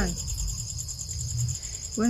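Crickets chirping in a steady, high-pitched pulsing trill over a low background rumble.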